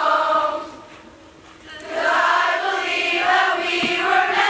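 A large choir of girls singing together, dropping away for about a second between phrases before coming back in.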